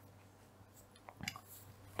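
Near silence in a small room, broken by a few faint small clicks about a second in.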